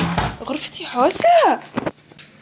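A woman's voice with pitch sliding up and down, over a bump of camera-handling noise at the very start.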